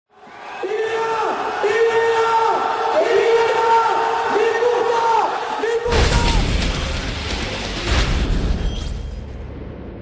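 Intro soundtrack. A pitched, voice-like phrase repeats for about six seconds, its held notes dropping off at the ends. It then cuts abruptly to a loud, noisy rush with a deep boom that fades away over the next three seconds.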